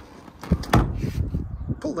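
Front sports seat of a 2016 Mini One being tipped forward for rear access: the backrest release lever clicks twice about half a second in, then the seat back swings and slides forward with about a second of rubbing and shuffling.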